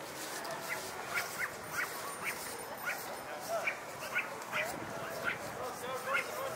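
Repeated short, high yelping calls from an animal, about two a second, over the murmur of people talking.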